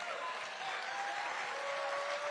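Large crowd applauding steadily, with a few long calls from the audience heard over the clapping.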